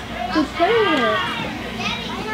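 A child's voice: one drawn-out vocal sound without clear words, rising and then falling in pitch, over a faint steady hum.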